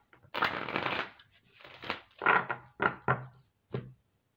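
A deck of oracle cards being riffle-shuffled by hand: a dense rippling burst as the cards fall together about a third of a second in, lasting under a second. Then come several short sharp taps as the cards are squared and set down on the table.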